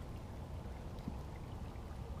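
Low, steady rumble of water and wind around a fishing kayak, with one faint tick about a second in.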